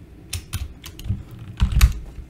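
Typing on a computer keyboard: a few irregular keystrokes, the loudest cluster near the end, as part of a search term is deleted and replaced with a wildcard.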